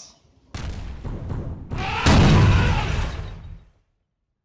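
Intro sound effect with the title card: a noisy rush starts about half a second in, then a deep boom about two seconds in that dies away before the end.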